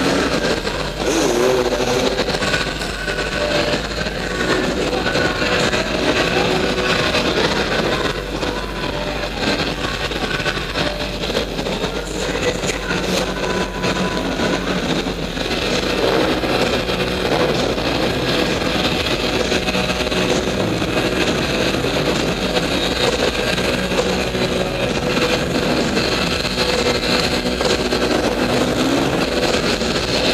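Several enduro dirt bikes revving and accelerating around an indoor track, their engine pitch rising and falling constantly, in a large reverberant hall.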